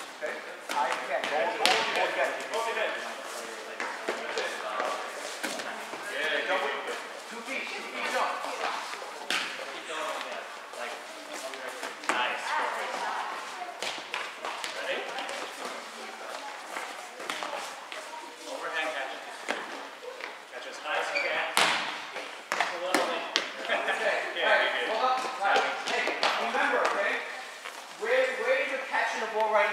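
Overlapping chatter and calls from players in a gym, with volleyballs being hit and bouncing as short smacks and thuds throughout. A single sharp smack about three quarters of the way through is the loudest sound.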